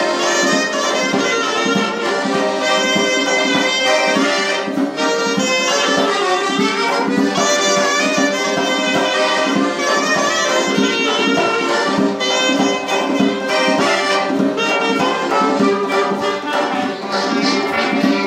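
Small folk band playing a tune: a clarinet leads the melody over steadily strummed acoustic guitar and accordion chords.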